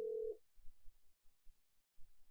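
A steady electronic telephone-line tone that cuts off under half a second in. Near silence follows, with a few faint low thumps.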